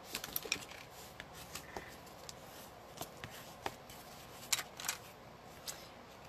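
Scattered light clicks and taps as card stock is handled and laid down on a craft mat.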